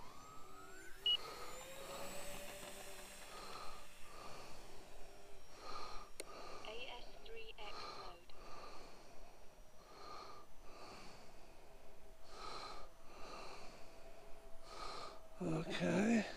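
Radio-controlled Twin Otter model's twin electric motors whining faintly, rising in pitch just after the start as it takes off and climbs away. Soft breathing close to the microphone recurs about once a second throughout.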